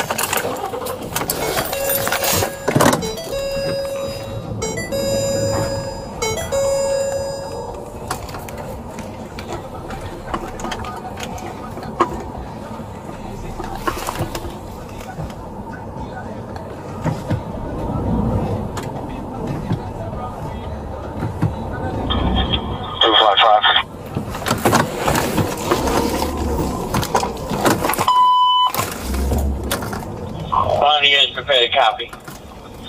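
Patrol-car cabin sounds with an electronic chime beeping four times, about a second and a half apart, early in the stretch. Later come a warbling tone and a short steady beep from the police radio.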